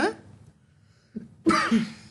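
A single short cough from a man, about one and a half seconds in, with a faint catch of breath just before it.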